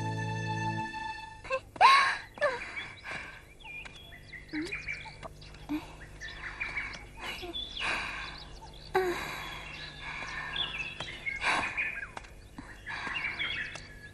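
Birds chirping in short, scattered calls, some sliding up or down in pitch, as outdoor ambience. A held musical chord fades out within the first second.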